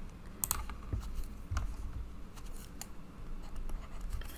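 Stylus tapping and writing on a tablet screen: a string of light, irregular clicks.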